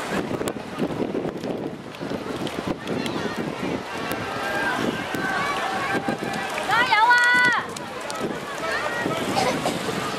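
Spectators' voices calling out at the trackside, overlapping, with one loud high-pitched shout held for just under a second about seven seconds in.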